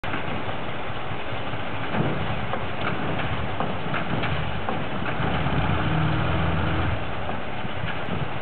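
Heavy diesel engines of a MAZ-5549 dump truck and a TO-18 wheel loader running at idle, with a few short knocks. A little past halfway the engine note grows louder and steadier for about a second and a half, then drops back.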